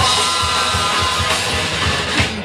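A rock band playing live, loud, with electric guitars and a drum kit.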